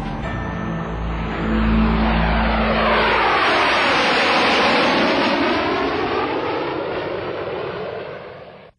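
B-2 Spirit stealth bomber's jet engines during a low flyover: steady jet noise that grows louder about a second and a half in, sweeps down and back up in pitch as the aircraft passes overhead, and eases off slightly near the end.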